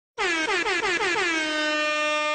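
Air horn sound effect: a quick run of about six short blasts, each sagging in pitch, then one long steady blast.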